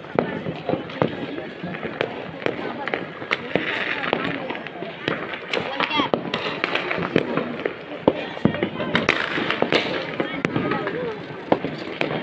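Firecrackers going off with irregular sharp cracks throughout, over indistinct voices.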